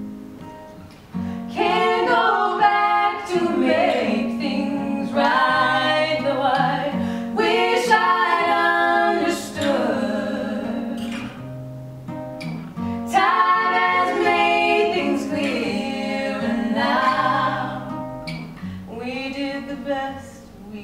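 Two female voices singing together over an acoustic guitar. The guitar plays alone at first, and the voices come in about a second and a half in, singing in phrases with a short break about two-thirds of the way through.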